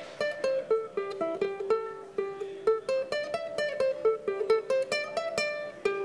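Ukulele picked one note at a time, running up and down a small pentatonic scale shape, about three or four notes a second.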